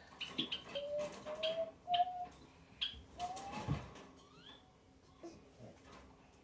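Wordless vocal groaning, a drawn-out 'ウェ～' ('ugh'), as a few short held notes that creep upward in pitch. A brief rising squeak follows, with scattered knocks and rustling around the voice.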